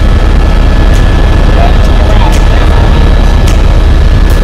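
Airbus (Eurocopter) AS350 B3 Écureuil single-engine helicopter in flight, heard from inside the cabin: a loud, steady din of rotor and turbine with a deep low rumble and a faint steady whine above it.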